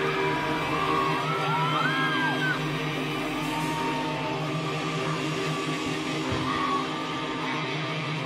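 A live rock band's electric guitar chord and amplifier drone ringing out steadily as the song ends, with a large festival crowd cheering and whooping over it. The whoops come mostly in the first few seconds.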